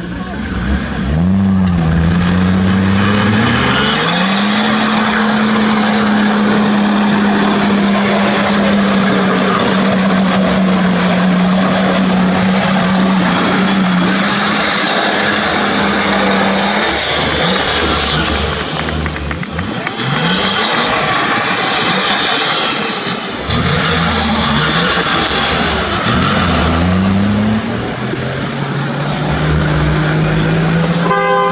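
A Toyota Land Cruiser 60-series engine runs at high revs under load with its wheels spinning through mud and dirt, the tyres and flung dirt making a loud rushing noise. The revs climb a few seconds in and hold steady for about ten seconds. They then drop and rise again in several short blips before settling lower near the end.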